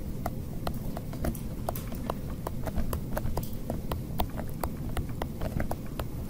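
Stylus pen tapping and ticking on a tablet screen during handwriting: many short, irregular clicks, several a second, over a low background rumble.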